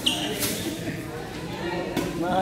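Spectators talking in an echoing sports hall during a badminton rally, with a few short sharp sounds from play on the court; the last, a sharp tick near the end, is a racket striking the shuttlecock on the serve.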